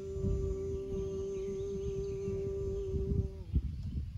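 A man singing one long held note to his own acoustic guitar accompaniment; the note ends about three and a half seconds in.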